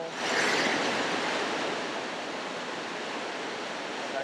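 Steady rush of flowing river water, a little louder in the first second and then even.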